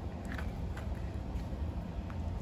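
Faint scrapes and taps of a gopher tortoise's claws on a plastic mat as it walks, a few soft ticks over a steady low rumble.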